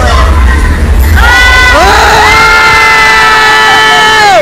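Ride voices cry out, then one long, high shriek is held for about two seconds. It rises in and falls away near the end, over a low rumble early on.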